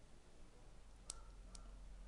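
Near silence with a low room hum, broken by two faint, sharp clicks, about a second in and again half a second later.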